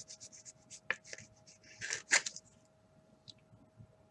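Cardboard trading card being slid into a rigid plastic top loader: a run of short scraping rubs and clicks, the loudest rub about two seconds in, then only light handling ticks. A faint steady hum lies underneath.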